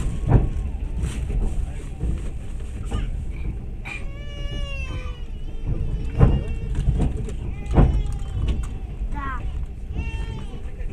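Passenger train running along the track, a steady low rumble from inside the carriage with a few sharp knocks from the wheels and rails. A high, drawn-out call, slightly falling, sounds over it about four seconds in, and short warbling calls near the end.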